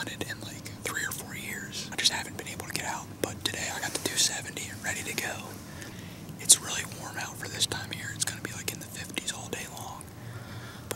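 A young man whispering close to the microphone in short hushed phrases that run through the whole stretch.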